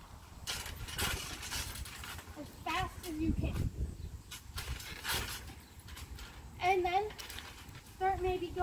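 Two short, indistinct bits of a voice, with noisy rustling bursts around a second in and about five seconds in, over a low rumble.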